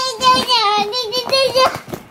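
A young child's high-pitched, sing-song wordless vocalizing: a run of short held notes that stops just before the end.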